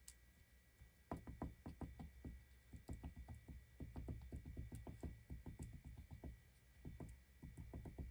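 Fine-tip bottle of Art Glitter Glue tapped rapidly and lightly against a paper die-cut, several soft taps a second, starting about a second in. The tapping lets out only a small amount of glue.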